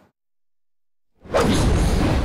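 Silence for about the first second, then a sudden loud whoosh with a deep rumble beneath it: the sound effect of an animated logo sting.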